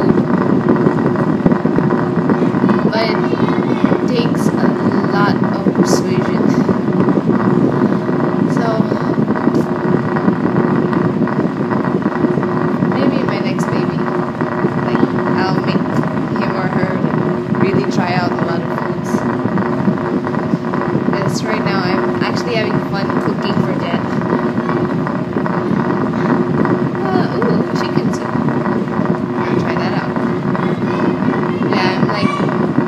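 A loud, steady droning hum holding one fixed low tone throughout, with a woman's voice speaking now and then over it.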